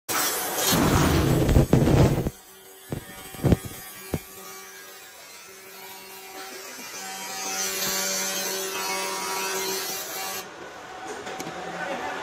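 Handheld 200 W pulsed fiber laser cleaning head stripping paint from metal plates: a steady buzz with a crackling hiss that cuts off about ten seconds in. It is preceded by a loud rough noise over the first two seconds and three sharp clicks.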